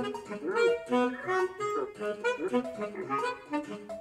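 Sampled baritone saxophone plus three other sampled instrument voices in Native Instruments Kontakt Player, playing back an algorithmically generated MIDI file: quick, short notes in several overlapping contrapuntal lines, some sliding in pitch.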